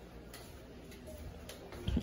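Faint footsteps on a tiled floor: soft clicks about every half second to second.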